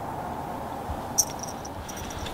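Steady low outdoor background hiss. About a second in comes a single short click, followed by a few brief, thin, high chirps.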